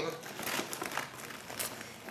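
Paper and packaging crinkling and rustling in a stream of small crackles as hands dig through the contents of an opened parcel.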